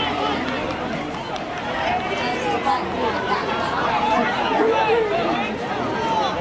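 Chatter of many overlapping voices from people standing around a running track, none of them clearly heard above the rest.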